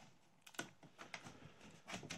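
Near silence broken by a few faint, scattered clicks and taps: fingers handling the opened plastic case of a Lenovo N585 laptop.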